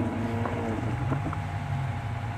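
Off-road 4x4's engine running with a steady low rumble as it creeps down a muddy forest track.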